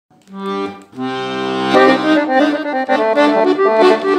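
Weltmeister piano accordion playing a Bulgarian rachenitsa: a short held chord, a brief break, then a longer chord over a low bass note, with a fast melody breaking out over it just under two seconds in.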